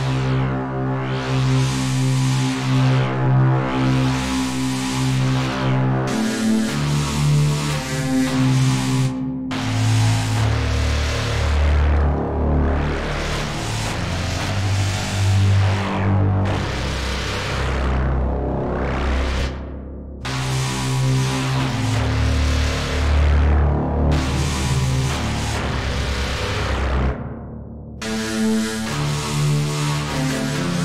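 A UVI Falcon wavetable-oscillator synth patch played in low notes, its tone sweeping brighter and darker about every two seconds as an LFO moves the wave index. It runs through an analog filter, crunch distortion, delay, plate reverb and a maximizer. The sound drops out briefly three times.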